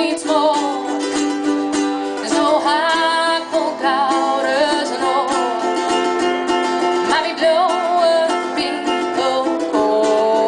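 A live folk song: a woman singing, accompanied by a ukulele and an acoustic guitar, with some long wavering sung notes.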